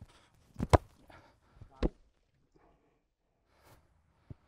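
A rugby ball box kicked off the boot from the base of a ruck: one sharp thud of boot on ball under a second in, then a fainter knock about a second later.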